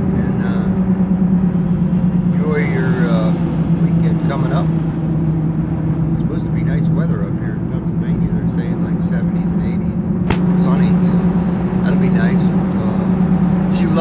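Steady drone of a pickup truck driving, engine and road noise heard inside the cab, with a man's voice talking over it. A sharp click about ten seconds in.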